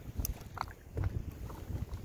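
Wind buffeting the microphone, an uneven low rumble, with a few faint short ticks.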